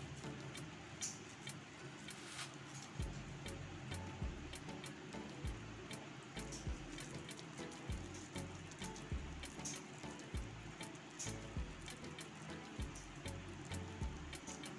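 Faint wet squishing and dripping as milk-soaked white bread is pressed by hand into a ball around a khoya laddoo, with many small scattered clicks throughout.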